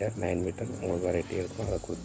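A man's voice speaking in a voice-over, with a steady high-pitched trill pulsing fast and evenly in the background.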